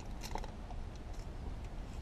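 Foil lid being peeled off a plastic barbecue-sauce dipping cup: a few faint crackles in the first half second, over a steady low hum.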